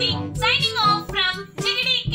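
A girl's voice over background music, with a brief pause about one and a half seconds in.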